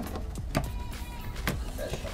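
A plastic dash trim cover on a 2001–2005 Honda Civic being pried off with a plastic trim tool: a few sharp clicks and creaks as its clips let go, over background music.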